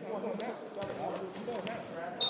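Indistinct chatter of several voices echoing in a gymnasium, with a few short, sharp taps scattered through it.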